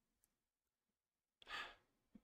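Near silence on a voice-chat microphone, broken about one and a half seconds in by a single short breath, a brief puff of air.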